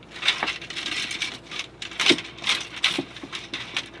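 Shower curtain being slid out along its curved ceiling track: fabric rustling and handling noise, with a few sharp clicks from the track.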